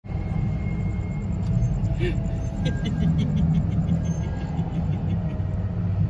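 Low, steady rumble inside a car's cabin from its idling engine, with a short laugh about two seconds in.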